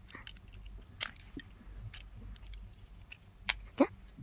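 Plastic LEGO bricks clicking and clattering as they are pulled apart and handled: a string of small sharp clicks, with a couple of louder snaps.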